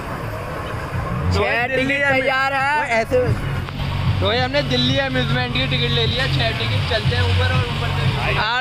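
Voices in stretches, over a steady low mechanical hum that runs throughout.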